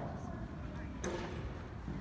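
A horse cantering on soft dirt arena footing, its hoofbeats dull and muffled, with one sharp knock about a second in. Faint voices are in the background.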